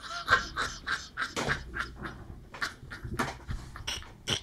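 A man laughing hard in a long run of short bursts, about three or four a second.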